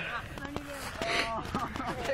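Young people's voices and laughter in short bursts, with a few light knocks.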